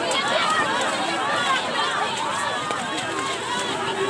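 A large crowd of protesters shouting over one another, a dense, continuous din of many voices.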